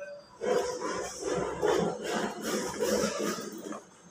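Rustling and scraping of packing material and chandelier parts being handled in a cardboard box, in a string of short, irregular bouts that stop near the end.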